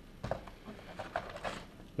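Paper and cardboard being handled: a few short, irregular rustles and light taps as a printed card and a paper calendar are moved and pulled from a cardboard box.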